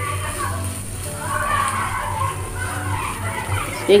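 Faint background voices and music, with no close voice; a steady low hum runs under them.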